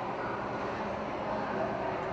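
Steady low hum and rumble of an indoor ice rink hall, with faint shifting tones of the skater's program music over the rink's speakers.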